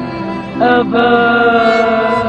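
Background music of long held notes, with a louder chord of sustained notes coming in about half a second in.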